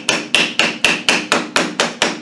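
Rapid metal tapping on the end housing of a Rover V8 starter motor, about four sharp, ringing strikes a second, as the small end cap is knocked to free it.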